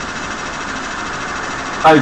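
Steady background noise, an even hiss with a faint low hum, holding level with no changes.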